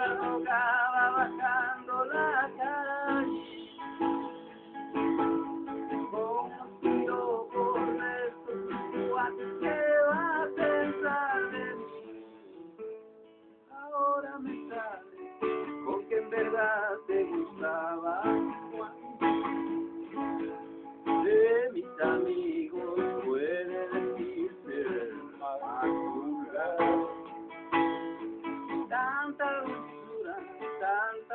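Acoustic guitar strummed and picked in an instrumental passage. It drops almost to silence about twelve seconds in, then carries on.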